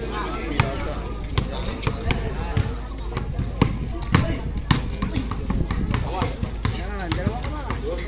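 Basketball dribbled on a painted outdoor court: a quick, uneven string of sharp bounces, about two a second, over the chatter of onlooking voices.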